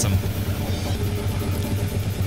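Fast drumming on a drum kit along with a death metal track.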